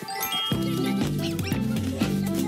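Upbeat commercial jingle music; a bass line and beat come in about half a second in.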